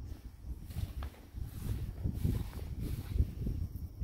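Footsteps on soft dirt with wind rumbling on a phone microphone, an uneven low rumble that comes and goes.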